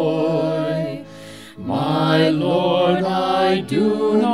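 A hymn being sung in a church, with held, sustained notes. There is a short breath between phrases about a second in, and then the next line begins.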